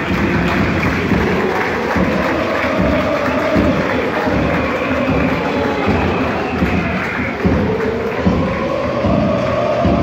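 Football stadium crowd cheering, with music and singing carrying over the noise of the stands.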